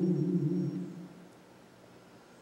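A man's chanted note, sung into a microphone, held and then fading away over about the first second, followed by near silence.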